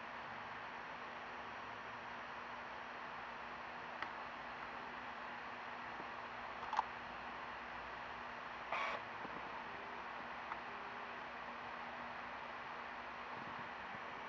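Faint steady hiss of room tone with a low hum, broken by a few small clicks, a short sharp tick about seven seconds in and a brief rustle about nine seconds in.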